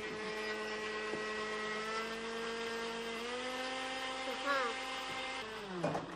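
A motor running with a steady pitched hum. Its pitch rises slightly about three seconds in, then falls as it winds down near the end.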